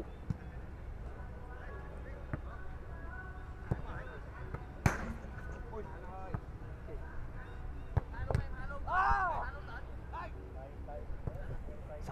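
Footballs being kicked during shooting practice: one sharp thump of a ball struck hard about five seconds in, with a few lighter knocks of balls later on. Distant players' voices sound throughout, with a single call just before the ninth second.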